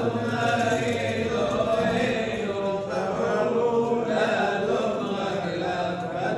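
Men's voices chanting a prayer melody together, in long wavering notes.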